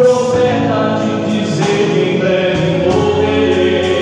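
A gospel hymn sung by a man into a microphone through the church sound system, with other voices singing along.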